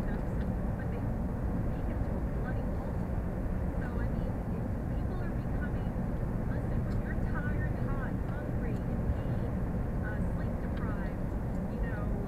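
Steady road and engine rumble inside a car cruising at highway speed, with faint voice-like sounds in the background.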